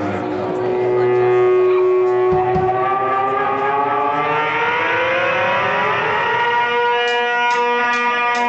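Electric guitar sustaining a droning chord whose notes slowly slide upward in pitch, with a few short strums near the end, just before the band kicks in.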